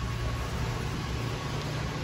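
Steady background hum and hiss of a large store's room tone, with a faint thin steady whine; no distinct events.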